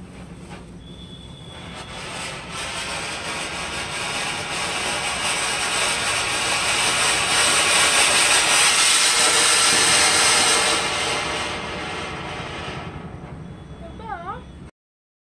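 Vimal anar (koti), a cone fountain firework, burning and spraying sparks with a rushing hiss. The hiss builds over the first few seconds, is loudest around two-thirds of the way through, then fades as the fountain burns down.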